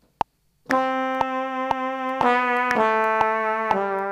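Synthesizer playing a brass-like patch, a slow descending line of about four held notes starting about a second in. Steady metronome clicks run through it at about two a second, as a MIDI take records.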